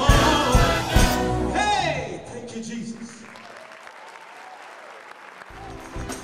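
Gospel choir and live band finish a song with drum hits and a last falling vocal line, then the audience applauds. Music starts up again near the end.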